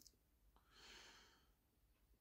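Near silence, with one faint breath about a second in.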